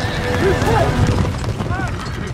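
A group of horses galloping, their hooves drumming on packed dirt, with several short neighs and whinnies over the hoofbeats.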